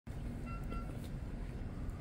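Low, steady background rumble of outdoor city ambience, with two brief faint high-pitched notes about half a second in.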